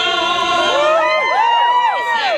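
A group of women's voices holds a sung note together. About a third of the way in, many voices break into overlapping whoops, each sliding up and back down in pitch.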